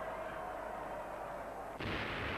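A steady background murmur of noise, then near the end a sudden onset of artillery fire and shell explosions with a low rumble.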